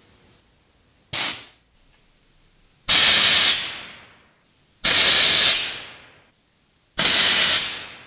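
Four blasts of compressed air from an air compressor's hand-squeezed blow-gun fired through a pipe, shooting pieces of straw into an apple: a short one about a second in, then three longer hisses that each tail off.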